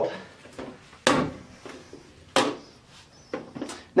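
Plastic toilet seat and lid knocking and clicking against the bowl as they are handled and set down: a few sharp knocks, the two loudest about a second and two and a half seconds in.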